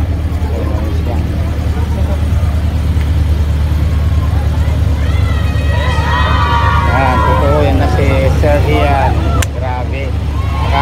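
A car engine idling with a steady low hum, with people's voices over it in the second half and a sharp click near the end.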